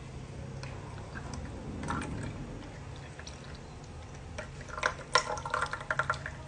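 Brewed coffee poured from a mug into a glass of milk and ice, a faint trickle, then a run of sharp glassy clinks near the end as the ice shifts against the glass.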